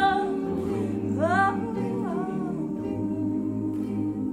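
A cappella choir holding a sustained chord under a female soloist's wordless vocalising. Her long high note breaks off just after the start, then a rising slide comes about a second in, followed by a falling phrase.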